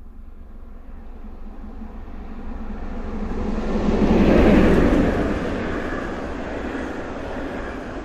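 DB class 01 steam locomotive 01 202 and its train of coaches passing at high speed. The running noise and rail rumble build to a peak as the engine goes by, about halfway through, then fade as the coaches pass.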